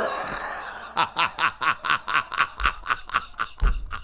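A man laughing hard: a breathy wheeze at first, then rapid, rhythmic bursts of laughter about four or five a second. A couple of low thumps come near the end.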